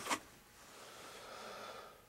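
Faint breathing: one long breath that slowly grows louder and stops just before the end.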